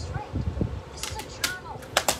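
Plastic DVD case being handled and snapped shut: a low rustle, then a few sharp plastic clicks in the second half. The loudest click comes at the end, as the case is pressed down onto a desk.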